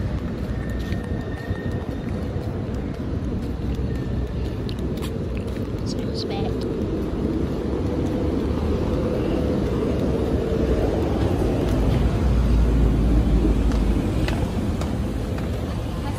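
Outdoor street ambience: a steady low rumble of road traffic that grows louder in the second half, with indistinct voices in the background.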